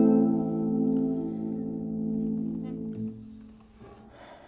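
A 15-string 1923 Hermann Hauser I contraguitar, spruce top with maple back and sides, letting its plucked notes ring on and die away, gone by about three and a half seconds in.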